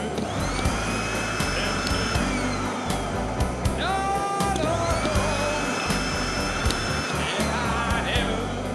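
Rock-and-roll band music with a steady drum beat, and an upright vacuum cleaner's motor whine standing in for the lead guitar. The whine rises, holds and falls away twice.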